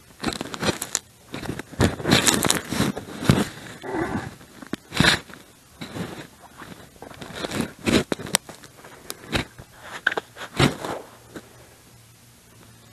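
Irregular short scrapes and crunches, close together in places and a second or so apart in others, dying away near the end.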